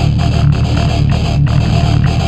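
Groove metal song: heavily distorted electric guitars over bass and drums, loud and dense, with a fast, steady rhythm of hits.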